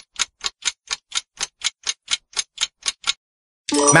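Countdown-timer ticking sound effect: quick, even clock ticks, about four or five a second, that stop shortly before the end.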